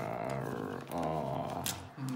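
A low, growly voiced sound held in two long stretches, the second ending just before the close, with a sharp click near the end.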